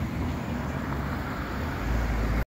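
Road traffic: cars driving past on a multi-lane road, a steady engine-and-tyre noise with a low rumble that swells near the end as a car passes close.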